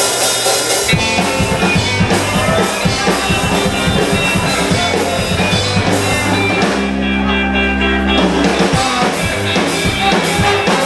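Live ska band playing an instrumental passage: drum kit, electric guitars and bass, with saxophones and trumpet on stage. About seven seconds in, the cymbals drop out for about a second under a held low note, then the full band comes back in.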